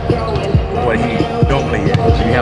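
Basketballs bouncing on the practice court in a large, empty arena: a few low thumps, roughly half a second to a second apart, over a steady hum.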